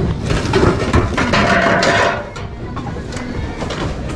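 Assorted household goods clattering and knocking against each other as hands rummage through a plastic bin, with background music playing.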